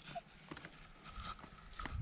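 Faint target tone from a Minelab Equinox metal detector over a buried metal target reading ID 22, a brief high steady note about halfway through, with a few soft clicks.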